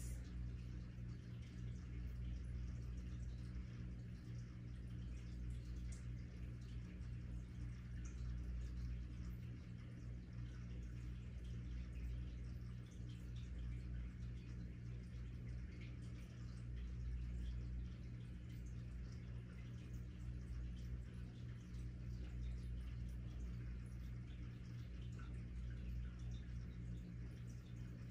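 Steady low electrical hum over room tone, with a low rumble that swells and fades a little.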